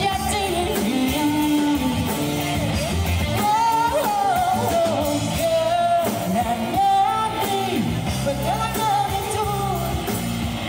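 A male singer singing into a microphone through a PA with live band backing, including guitar; the voice slides and bends between notes over a steady accompaniment.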